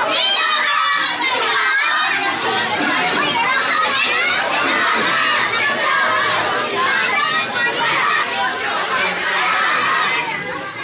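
Crowd of boys and men shouting together in a walking procession, many voices overlapping at once, children's voices high and prominent, loud and unbroken.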